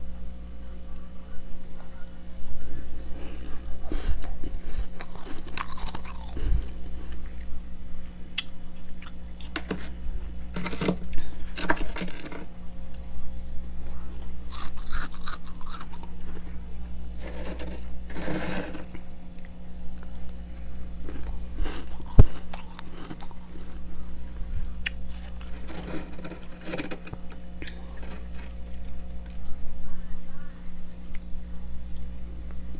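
Freezer frost crunching as it is bitten and chewed, in several bursts of crackling with one sharp crack about two-thirds of the way through. A steady low hum runs underneath.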